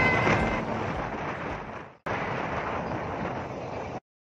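Steady vehicle and wind noise from riding in an open-sided passenger vehicle, with a brief voice at the very start. The noise fades out about two seconds in, and a second stretch of the same ride noise follows.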